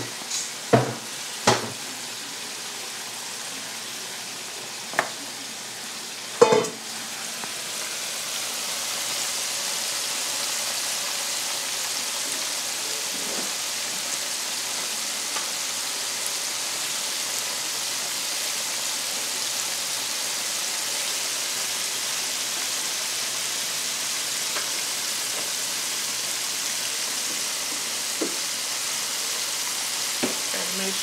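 Hot oil sizzling steadily in an electric deep fryer as food fries, growing louder about eight seconds in and then holding. Several sharp knocks and clatters of kitchen things being handled come in the first seven seconds.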